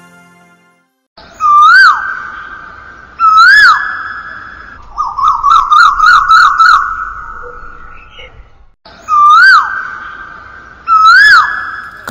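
A loud bird-like whistled call: two short swooping notes, each dipping and then rising before dropping away, followed by a fast warbling trill. The same sequence starts over about 9 seconds in.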